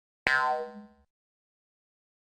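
A cartoon sound effect: a sharp hit with a ringing tone that dies away within about a second.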